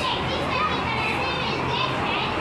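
Several children talking and chattering at once, over a low steady hum.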